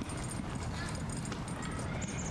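Footsteps on soft dirt and leaf litter over steady outdoor background noise.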